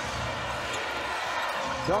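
A basketball bouncing on a hardwood court under a steady haze of arena crowd noise, as carried on a TV game broadcast. A commentator's voice comes in right at the end.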